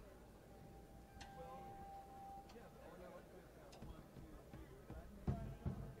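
Quiet on-stage lull between songs on a live rock concert recording: a single held note for about two seconds, then a few dull low thumps near the end.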